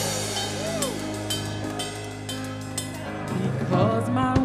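Gospel worship music played softly by the church band: held chords under drums with repeated cymbal strikes, and a single voice briefly calling out about a second in.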